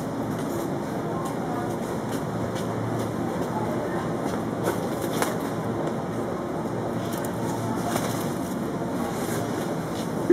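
Steady supermarket background hum from the open chilled display shelves, with a couple of light clicks about halfway through.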